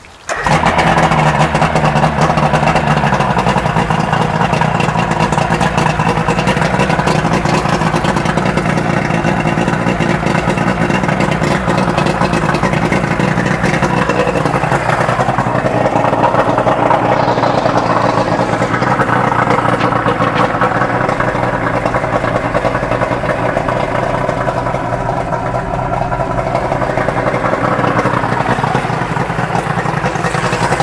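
Outboard motor starting right at the beginning, then running steadily at idle for its final test run after repairs, with the lower unit water-cooled from a hose.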